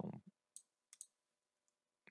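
Computer mouse clicking: three faint, short clicks, one about half a second in and two in quick succession about a second in, against near silence.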